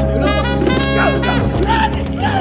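Background music, with a steady low bass under higher melodic parts that bend in pitch like a voice.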